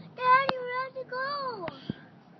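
A girl's voice singing a high held note, then a second note that slides downward, with a few sharp clicks.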